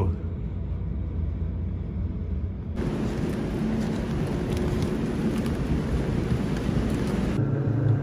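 A low steady rumble, then about three seconds in the hiss of heavy rain pouring onto a city street, over a low traffic rumble. Near the end it gives way to a steady low hum.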